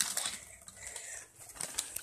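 Rustling and a few clicks of a phone being handled and carried, with a sharp click right at the start.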